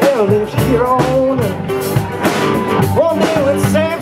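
Live rock band playing, electric guitars to the fore, with bending, gliding lead notes over steady low bass notes.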